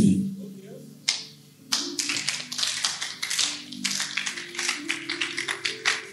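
Congregation clapping in dense, irregular strikes, starting a little under two seconds in, over soft sustained musical chords.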